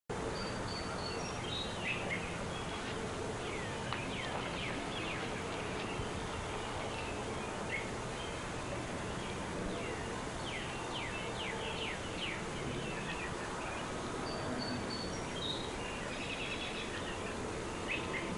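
Outdoor ambience: a steady background hiss with birds chirping now and then, including two runs of quick, falling chirps.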